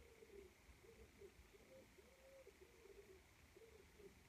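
A pigeon cooing faintly outside, a continuous run of soft, low, rounded coos.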